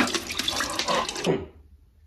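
Water rushing and splashing in a toilet, a sound effect from a comedy film's soundtrack, dying away about a second and a half in.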